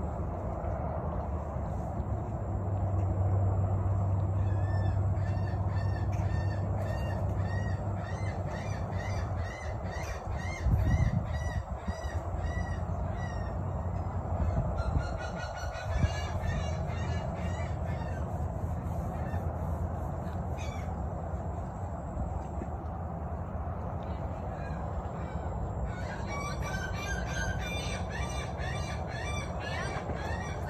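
Birds calling in runs of short, repeated high calls, about two a second, over a steady low hum, with a couple of bumps around the middle.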